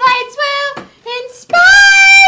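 A woman singing solo, with a long held note with vibrato starting about one and a half seconds in.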